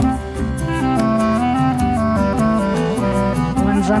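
Recorded folk band playing an English country dance tune, with a caller's voice starting at the very end.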